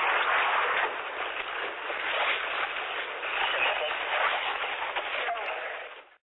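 Indistinct, garbled voices buried in heavy static, like police radio traffic heard through a narrowband in-car recorder. The sound fades out at the very end.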